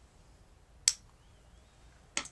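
One sharp, short tap a little under a second in: a paintbrush loaded with blue watercolor being tapped to flick spatter onto the paper.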